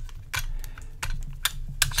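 A handful of light, irregular clicks and taps from handling a diecast toy horse box, fingers working at its plastic rear door and body.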